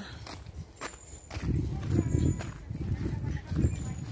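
Footsteps of a person walking on a paved path, filmed on a handheld phone, with wind buffeting the microphone in uneven low gusts from about a second and a half in.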